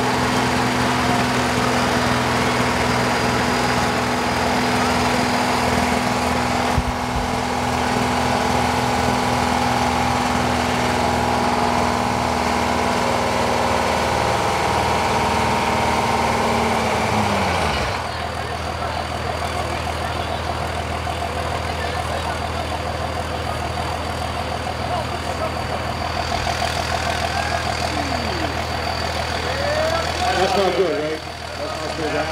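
A school bus engine running at a steady high speed, which winds down with a falling pitch about seventeen seconds in; a steady engine idle carries on after that.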